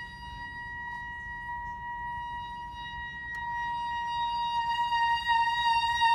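Soprano saxophone holding one long, high note, steady in pitch, unaccompanied, slowly swelling louder over the last couple of seconds.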